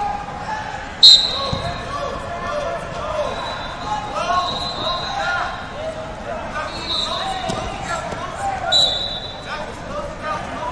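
Sharp referee's whistle blast about a second in, with a second short whistle near the end, over wrestling shoes squeaking on the mat and the murmur of voices in a large echoing hall.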